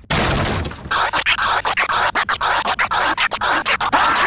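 A loud, distorted glitch sound effect: a sudden burst of harsh noise that, about a second in, is chopped into rapid stuttering cuts, several a second.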